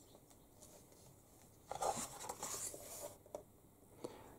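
Paper rustle of a book page being turned: a short swish starting a little under halfway through, followed by a single light tick.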